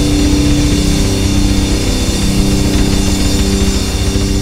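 Progressive-technical metal recording: distorted guitars and bass sustaining notes over drums with dense, rapid low-end strokes.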